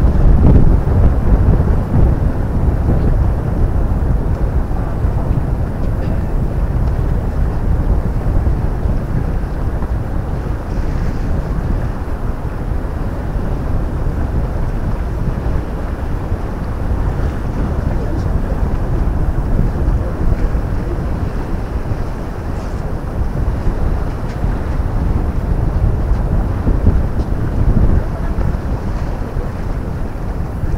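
Wind buffeting the microphone, a loud low rumble that rises and falls in gusts, strongest in the first couple of seconds.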